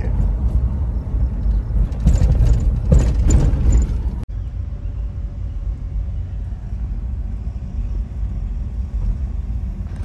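Wind buffeting the microphone, a low rumble that swells in gusts two to three seconds in. It cuts off abruptly about four seconds in, and a steadier low rumble follows.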